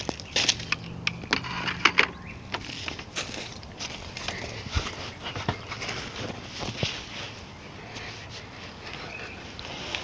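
Hurried footsteps crunching and crackling through dry leaf litter, with rustling from the handheld camera. The crunches come thick and fast for the first few seconds, then thin out.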